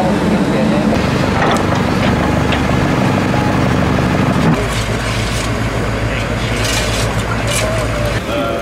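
Diesel engines of tracked hydraulic excavators running steadily as they dig through snow and rubble. The engine note changes abruptly about halfway through, and a few knocks or clanks come near the end.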